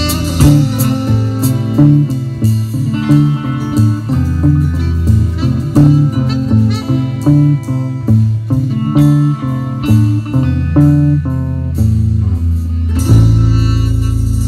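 Live blues band playing an instrumental passage: guitar, bass and drums in a steady rhythm, ending on a held chord about a second before the end.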